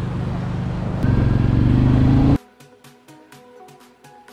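Motorcycle engine running while riding; about a second in it gets louder and rises in pitch as the bike accelerates, then cuts off suddenly a little past halfway, giving way to faint background music.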